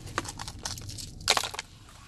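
Crunching of a golden-brown, crispy breaded onion ring being bitten and chewed: a string of crisp crackles with a louder crunch about a second and a quarter in, the coating crumbling as it is bitten.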